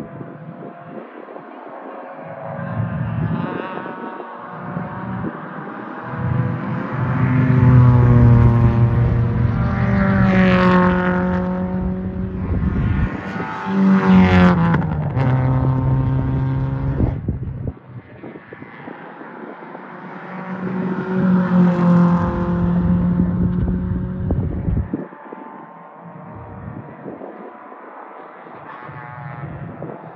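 Race car engines at full throttle on the circuit, rising in pitch through the gears. About halfway through a car goes close by, loudest of all, its engine note dropping sharply as it passes. Another car goes by loudly a little later.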